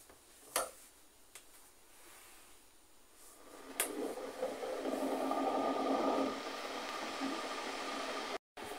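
A white plastic electric kettle switched on with a click, followed by the steady hiss and rumble of the water starting to heat. A light knock comes shortly before, near the start.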